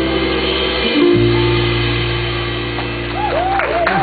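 Live rock band letting a final chord ring on electric guitar, keyboard and bass, moving to a new chord about a second in and holding it. Near the end the audience starts to cheer.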